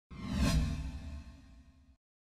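Whoosh sound effect of a news channel's logo sting, swelling to its loudest about half a second in over a deep rumble, then fading away.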